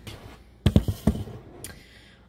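Handling knocks as the camera phone is moved and set down: a quick cluster of heavy thumps and clicks a little over half a second in, then one lighter click.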